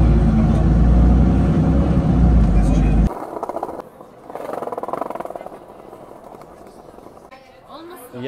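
Skateboard wheels rolling on skatepark concrete: a loud rumble that cuts off suddenly about three seconds in, followed by quieter rolling that swells and fades.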